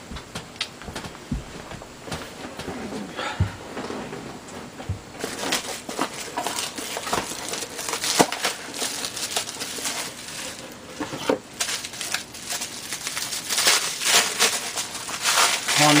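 Plastic bubble-wrap packaging and a cardboard box being handled as a small charge controller is lifted out. A few soft knocks come first, then dense crinkling and crackling of the plastic from about five seconds in.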